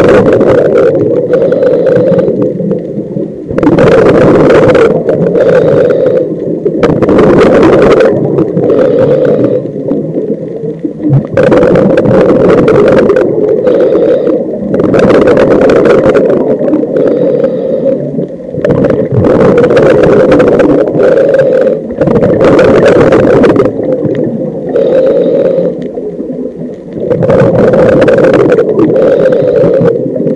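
Muffled underwater noise from a camera below the surface, with loud rushing surges every three to four seconds.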